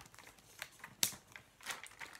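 Stickers being peeled off their backing sheet and the sheet handled: a few soft crackles and ticks, the sharpest about a second in.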